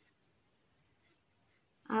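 Sketch pen drawing on paper: a few short, faint scratchy strokes as an outline is traced.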